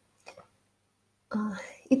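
A pause in a woman's speech, near silent for about a second, then her voice resumes about a second and a half in.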